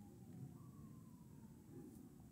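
Near silence: room tone with a faint low hum and a faint thin high tone that slowly falls in pitch.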